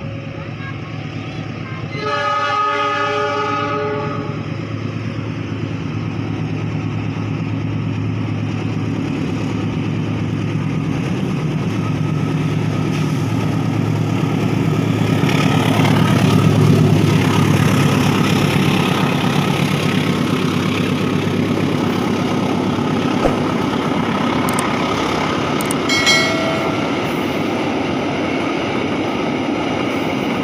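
A diesel locomotive sounds its horn for about two seconds. Then the locomotive and a rake of passenger coaches rumble past at low speed, loudest as the locomotive goes by in the middle, and a second short tone comes near the end. The train is creeping through the speed restriction of about 20 km/h over newly replaced points and sleepers.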